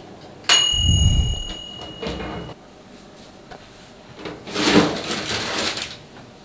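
Countertop toaster oven door pulled open with a clunk and a short metallic ring. From about four seconds in, the metal baking tray slides out along the oven rack.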